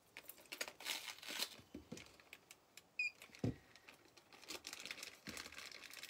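Faint crinkling and rustling of plastic packaging being handled, with scattered light clicks. A brief high chirp comes about three seconds in, followed by a soft thump.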